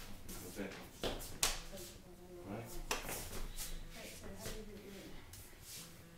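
Low, indistinct talking, with a few sharp taps and shuffles of shoes on a hardwood floor as the two move about.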